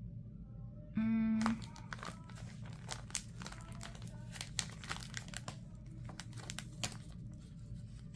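Plastic sticker sheets and clear pouches crinkling and clicking as they are handled and flipped through. A short steady hum sounds about a second in.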